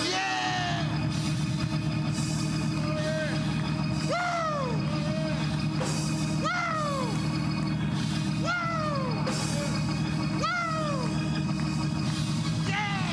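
Church organ music: a steady low chord held throughout, with a pitched rising-then-falling slide about every two seconds.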